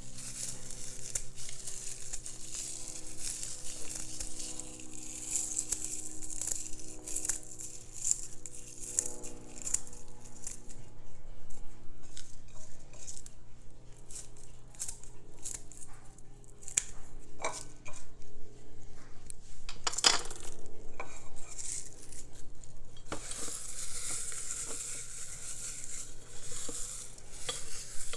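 Herb scissors snipping lemon verbena sprigs, a run of small clicks and crisp leaf rustles. Near the end comes a steadier rustling as the leaves are rubbed and crumbled between the hands.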